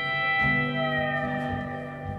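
Pedal steel guitar holding a sustained chord, with one note sliding down in pitch about a second in, over acoustic guitar in an instrumental gap of a live rock band.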